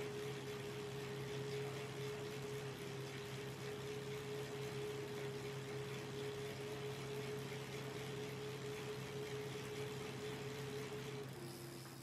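Tacx Neo smart trainer running under steady pedalling: a steady whine over a low hum, the whine dropping slightly in pitch near the end.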